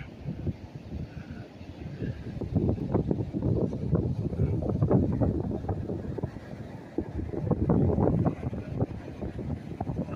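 Wind buffeting the microphone, a low rumble that swells and fades in gusts.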